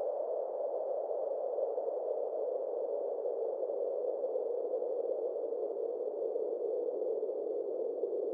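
A steady, muffled, hiss-like background noise, mid-pitched and without rhythm, with two faint high tones held above it: an ambient sound bed in an animated cartoon's soundtrack.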